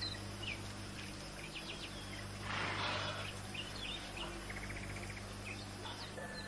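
Birds chirping in short, scattered calls over a steady low hum, with a brief rustling noise about two and a half seconds in and a quick rapid trill a little before the end.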